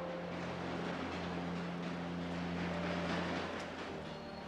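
Elevated train passing: a steady rushing noise with a low, sustained hum.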